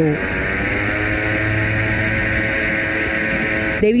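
A boat motor running steadily, its pitch settling slightly in the first half second and then holding even.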